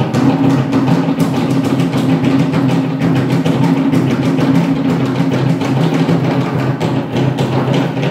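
Live percussion music: fast, continuous drumming over a steady low drone of held tones.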